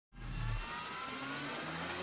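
A rising swell sound effect for an animated logo intro, its pitch climbing steadily over about two seconds above a low hum.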